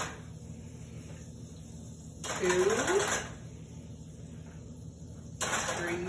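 A woman counting aloud, "two" about two seconds in and "three" near the end, while scooping tablespoons of margarine into a pot, with light clinks of a measuring spoon against the pot.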